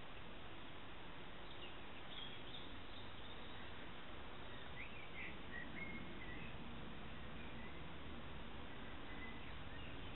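Steady outdoor background noise with a few faint, short bird chirps, a couple around two seconds in and a couple more around five to six seconds in.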